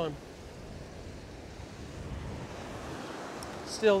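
Ocean surf breaking and washing up a sandy beach, a steady wash that swells a little midway.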